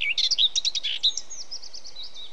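Birdsong: a quick jumble of high chirps in the first second, then a steady run of short, repeated high chirps.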